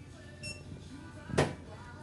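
Background music, with a short high beep about half a second in and a sharp thump a little before the end.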